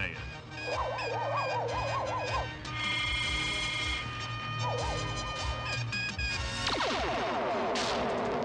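Cartoon sci-fi weapon sound effects from a twin-barrelled gun turret: a warbling electronic tone that wavers up and down, heard twice, then a run of quick falling zaps near the end, over the background music score.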